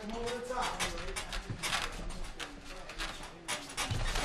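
Faint voices calling out from cageside, over scattered short, sharp slaps and clicks of two MMA fighters moving and striking in the cage.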